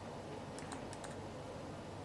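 Low background noise with a few faint, sharp clicks close together about a second in.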